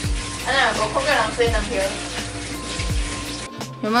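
Kitchen tap running as eggs are rinsed by hand in the sink, an even splashing hiss that cuts off near the end.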